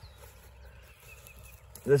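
Quiet outdoor ambience in a pause between words, with a faint thin high call about halfway through. A man's voice starts again near the end.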